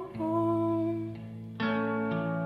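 Background song: a voice holds one long note over plucked guitar, and a new chord comes in about one and a half seconds in.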